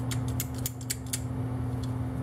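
Light metallic clicks as a vintage Eifel geared Plierench is worked by hand, its jaws opened and shifted. The clicks come quickly for about the first second, then only now and then, over a steady low hum.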